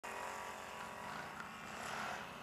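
Can-Am Outlander XXC 1000 ATV's V-twin engine running steadily with an even hum.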